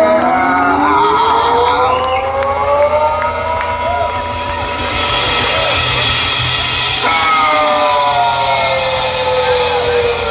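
Live blues band playing the end of a song: a long sustained note slides slowly upward over the first few seconds, and another glides down near the end, over a steady low rumble.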